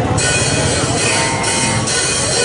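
Live rock band on stage playing loudly: a dense noisy wash of cymbals and electric guitar as the song gets under way.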